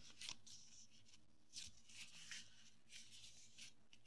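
Faint rustling of a sheet of paper being folded in half and smoothed flat by hand: about half a dozen short, soft rustles.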